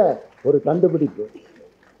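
A man speaking into a microphone in a few short, lilting phrases with falling pitch that trail off a little over a second in.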